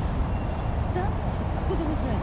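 Steady low rumble of city traffic, with faint snatches of passers-by talking.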